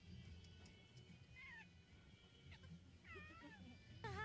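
Near silence, broken twice by a faint, short, high gliding vocal sound, about a second and a half in and again about three seconds in, over a steady low hum.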